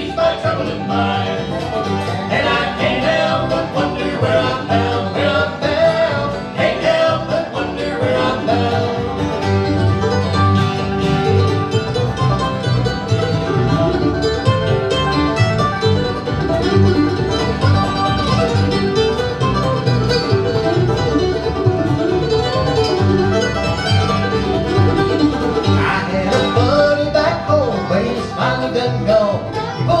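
Acoustic bluegrass band playing an instrumental break between verses: banjo, guitar, mandolin, dobro and upright bass.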